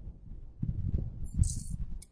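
Low, irregular thuds of a person shifting and touching the microphone area, then a short breathy hiss of a breath drawn in near the end.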